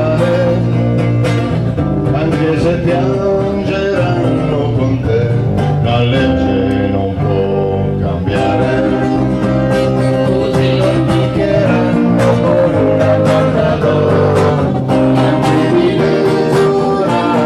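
Live band music led by guitars, with a steady beat.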